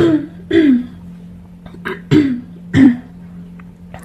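A woman coughing four times, in two pairs: one pair right at the start and another about two seconds later, with the coughs in each pair about half a second apart.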